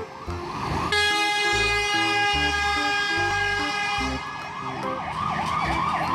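Fire engine siren yelping in quick rising-and-falling sweeps, about two or three a second, with a steady horn blast held from about one second in until about four seconds in.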